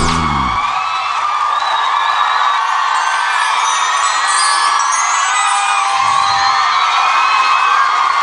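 The band's last chord cuts off just after the start, giving way to a studio audience applauding with high-pitched cheers and screams.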